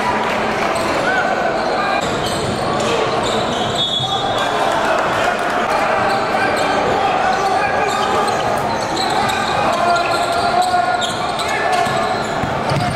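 Basketball being dribbled on a hardwood gym floor during live play, with the voices of players and spectators echoing in a large hall.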